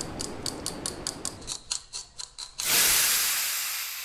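Clockwork gears ratcheting as a sound effect, about five even clicks a second. The clicks stop about two and a half seconds in, cut off by a sudden loud hiss that slowly fades.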